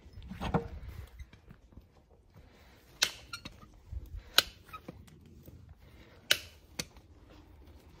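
Hoof nippers cutting through the wall of a Shire cross's hoof during a trim: four sharp snaps, the first about three seconds in and the last two close together.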